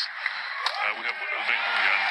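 A single sharp crack of a badminton racket striking the shuttlecock about two-thirds of a second in, followed by the arena crowd's noise swelling as the rally ends.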